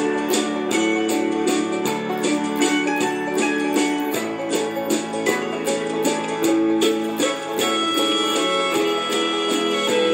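Instrumental introduction of a country-gospel backing track: plucked guitar and mandolin-like strings over a steady beat, with no singing yet.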